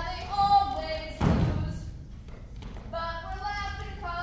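Several voices singing a show tune, with one heavy thump about a second in.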